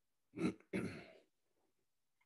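A person clearing their throat, two short rasps in quick succession about half a second in, heard over a video-call microphone.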